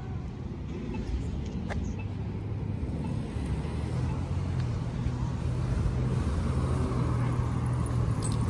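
Street traffic with the steady low hum of a diesel city bus engine running close by, growing louder in the second half.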